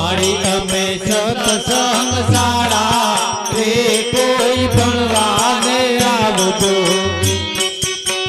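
Devotional bhajan music: a man sings a long, wavering melodic line to harmonium and steady rhythmic percussion. Near the end the voice drops out, leaving the harmonium on held notes with the beat.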